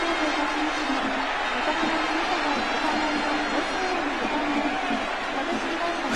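Baseball stadium crowd cheering and chanting steadily, many voices blended together, in celebration of a go-ahead grand slam home run.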